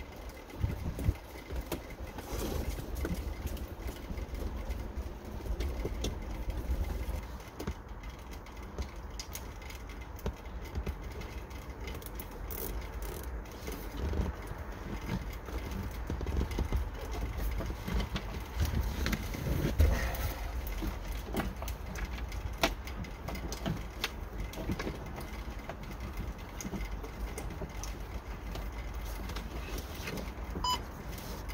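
Handling noise of wiring and plastic trim at a truck's A-pillar: scattered small clicks, ticks and rustles as the wire is pushed and tucked into place, with a few louder knocks about two-thirds of the way through, over a steady low rumble.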